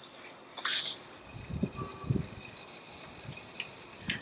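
A page of a paper colouring book being turned by hand: a brief papery swish just under a second in, then a few soft low bumps as the page is laid down and the book is handled.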